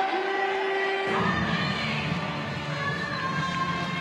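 A man's long drawn-out shout ends about a second in. A large stadium crowd then breaks into shouting and cheering together, with music playing over it.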